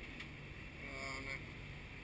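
Steady low background noise aboard a sailboat under power: the auxiliary engine running at about 1500 RPM and the hull booming into the water.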